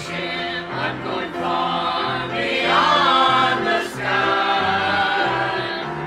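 A mixed church choir of men and women singing a hymn together, with low held bass notes moving in steps beneath the voices.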